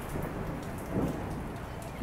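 Rain falling steadily outside, an even hiss that swells briefly about a second in.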